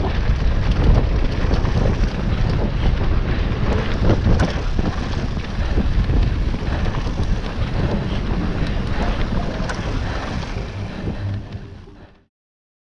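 Wind buffeting an action camera's microphone on a mountain bike riding fast down a dirt trail, with frequent knocks and rattles from the bike over the bumps. The noise fades out near the end.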